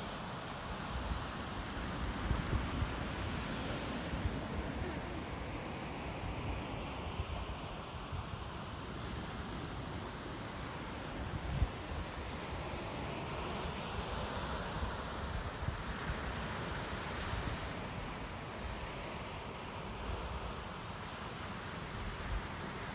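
Ocean surf breaking over lava rocks and washing up a sand beach, a steady hiss of water. Wind buffets the microphone in uneven low gusts, with one sharper bump about halfway through.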